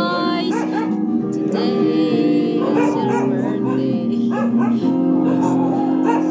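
A group of voices singing a mañanita, a Filipino serenade song, over recorded backing music, with a dog barking now and then.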